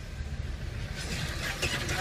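Steady low rumble of a car's engine and tyres, heard from inside the cabin while driving slowly. From about a second in, a patch of higher crackling and clicking joins the rumble.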